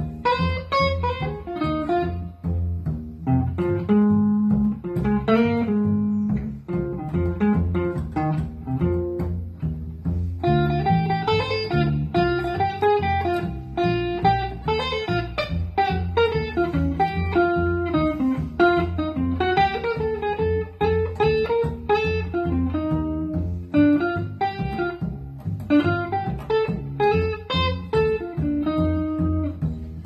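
Electric guitar and upright double bass playing together: the guitar picks a line of single notes over the plucked bass notes below.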